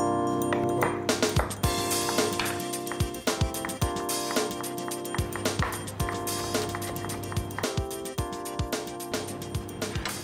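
Background music with a steady beat, over a run of sharp, irregular knife strikes on a wooden cutting board as ginger and garlic are chopped by hand.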